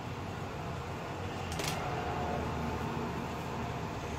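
Steady background hum of room noise, with a brief rustle about one and a half seconds in.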